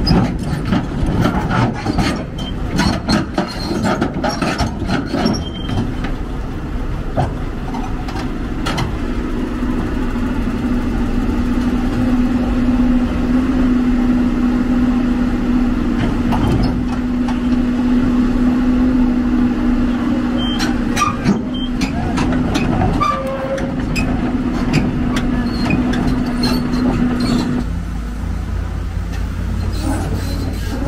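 Hyundai 290LC-7 crawler excavator's diesel engine working hard as the machine tracks up onto a lowbed trailer, its steel tracks clanking and knocking over the ramps and deck for the first several seconds. It then settles into a steady drone at one held pitch under load, before the sound drops to a lower hum near the end.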